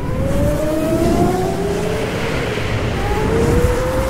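Racing car engine sound effect accelerating: a steady low rumble under an engine note that climbs in pitch, with a second climb starting near the end.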